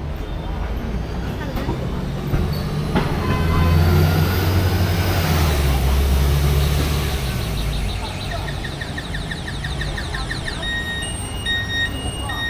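A city bus passing close by in the street: its low engine rumble swells to its loudest about four seconds in, then fades. Near the end a rapid run of high ticks gives way to a repeating electronic beep.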